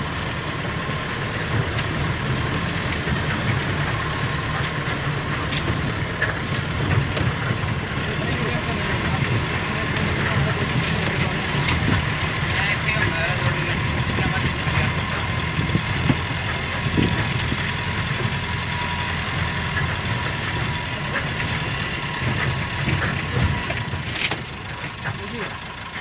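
A motor vehicle's engine running steadily with a low hum, dropping in level near the end.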